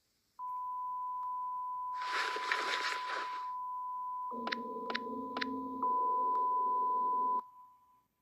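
A long, steady, single-pitched electronic beep tone, dropped into the edit, starts about half a second in and stops shortly before the end. A burst of hiss sits over it for a second or so. About halfway through a low steady chord joins it, with a few sharp clicks.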